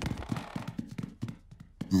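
Light, quick cartoon footsteps climbing a staircase, a rapid even patter of about six soft taps a second that fades out near the end.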